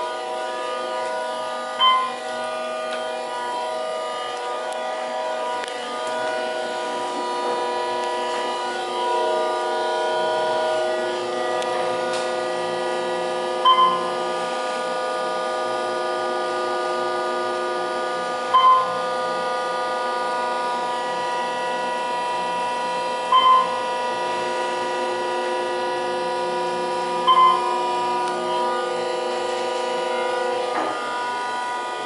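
Otis hydraulic elevator car in motion: a steady whining hum of several tones runs throughout. Five short electronic beeps come a few seconds apart, the fourth doubled, and they are the loudest sounds.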